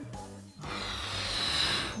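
Cartoon sound effect of gas hissing from a cylinder as a balloon inflates. It starts about half a second in and grows slowly louder, over soft background music.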